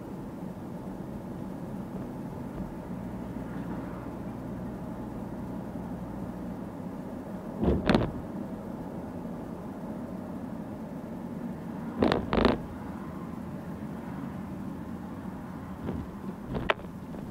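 Car cabin noise while driving on a city street: a steady low hum of engine and tyres. Twice, a little before the middle and again about four seconds later, comes a brief loud double knock or creak.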